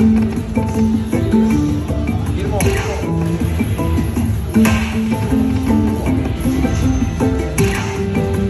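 Aristocrat Lightning Link slot machine playing its looping free-spins bonus music, a run of short melodic notes. Sharp accents come about two and a half, four and a half and seven and a half seconds in, as spins land.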